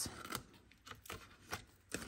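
Small scissors snipping black cardstock, a few faint, brief snips about half a second apart as the corners of the box tabs are trimmed.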